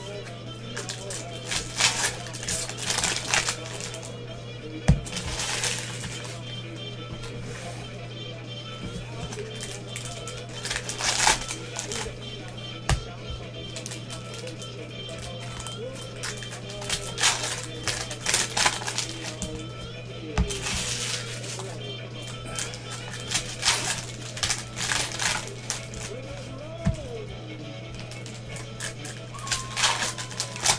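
Trading-card pack wrappers and cards being torn open and handled, rustling and crinkling in repeated bursts over a steady low hum. Background music and faint voices run underneath.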